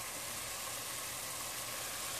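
Pan of water with meatballs simmering and steaming: a steady hiss, with a low steady hum underneath.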